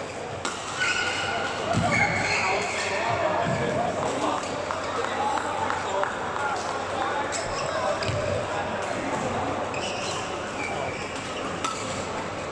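Badminton hall during play: rackets striking shuttlecocks and players' footwork on the courts, with the chatter of voices echoing in the large room.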